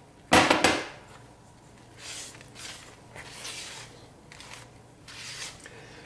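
A short clatter of a bowl being set down on the counter about half a second in, then softer swishing strokes, about one a second, of a rubber spatula stirring flour into thick cake batter in a plastic mixing bowl.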